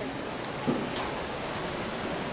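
Steady, even background hiss of room noise with no voice, and a faint soft knock a little under a second in.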